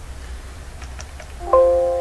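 A computer alert chime: several tones sound together about a second and a half in and fade slowly. Before it there are a few faint clicks.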